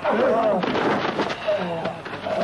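Kung fu fight sound effects: several sharp, dubbed punch and kick impacts mixed with fighters' shouted yells.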